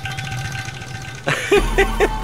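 A held dramatic music tone with a low drone, then about 1.3 s in a man bursts out laughing over a deep bass note of the soundtrack.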